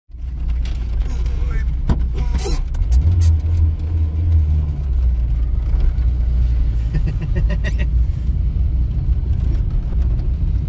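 Inside the cabin of a 1990 Lada Samara (VAZ-2108) driving slowly: a steady low engine and road rumble that swells for a couple of seconds about three seconds in, with a few sharp clicks or knocks near the two-second mark.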